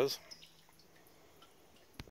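A man's voice trailing off, then faint dripping and trickling of spring water, barely above the background.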